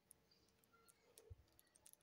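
Near silence, with a few faint scattered clicks from hands working hair into a cornrow braid.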